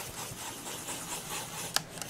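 Paintbrush rubbing and scrubbing acrylic paint around on a disposable plate palette while mixing a skin tone, with a sharp tick near the end.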